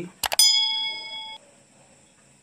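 Two quick clicks followed by a bright bell ding that rings for about a second and then cuts off suddenly: the sound effect of an animated like-and-subscribe button overlay.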